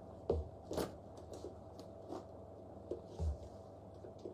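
A handbag and its strap being handled as it is slung on crossbody: a few faint, scattered clicks and rustles, with a soft thump near the start and another near the end.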